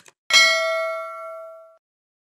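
Subscribe-button animation sound effect: a short mouse click, then about a third of a second later a bright notification-bell ding that rings out and fades over about a second and a half.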